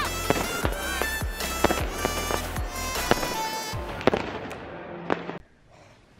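New Year's Eve fireworks and firecrackers banging in quick succession, with music playing over them; the sound fades out about five seconds in.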